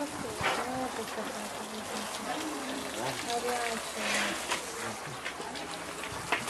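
Water from a garden hose spraying in a steady hiss onto bears and the floor of their cage, with voices talking in the background.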